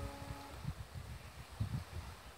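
The last strummed chord of an F-style mandolin rings out and fades away about half a second in, then wind buffets the smartphone microphone in uneven low gusts.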